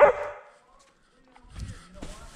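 A short voice sound fades out right at the start. After about a second of near silence comes irregular rubbing and soft knocking from a GoPro strapped to a German Shepherd as the dog moves about.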